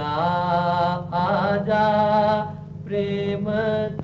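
Singing from a 1940s Hindi film song: long, wavering held notes in short phrases, about a second each, over a steady low drone accompaniment.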